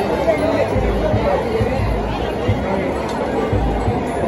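Stadium crowd: many spectators talking and calling out at once, a steady babble of voices, with a few low rumbles underneath.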